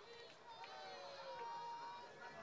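Faint, distant voices talking, with no one speaking close to the microphone.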